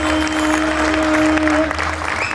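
Audience applauding, a dense patter of many hands, while a single steady note from the music is held and stops near the end.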